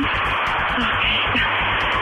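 Hissing, crackling static over a telephone line, with a faint steady beat of background music underneath.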